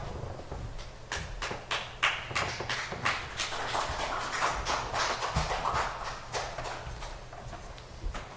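Footsteps of several people walking off a church chancel: a quick, irregular run of shoe knocks and scuffs, with some rustling, over a low steady hum.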